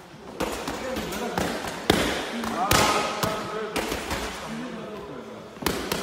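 Boxing gloves smacking into a partner's raised gloves and mitts during a combination drill: about eight sharp slaps at irregular gaps, some in quick pairs.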